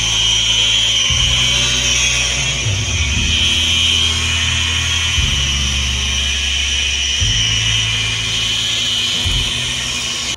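Power drill with a mixing paddle running at a steady speed with a constant high whine, stirring two-part polyurethane and its catalyst.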